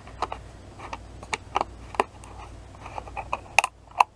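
Plastic screw cap of a plastic vegetable-oil bottle being twisted open: a run of irregular sharp clicks as the tamper-evident seal ring breaks, the loudest near the end as the cap comes free.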